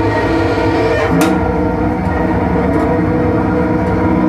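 Experimental improvised music: bowed cello held in long sustained tones inside a dense, rumbling drone, with one sharp click a little over a second in.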